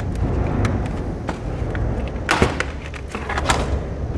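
Clicks and knocks of a laptop being taken apart by hand, with its case, mainboard and screws being worked at, over a steady low rumble. The sharpest knocks come a little past halfway.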